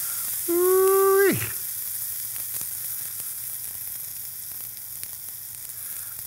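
Steak searing in hot fat in a stainless-steel pan, held on its edge with tongs: a steady sizzle with small spattering crackles. About half a second in, a brief pitched tone, louder than the sizzle, sounds for under a second and drops in pitch as it ends.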